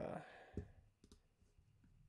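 Faint clicks from working a computer: one sharper click about half a second in, then a few lighter ones around a second in.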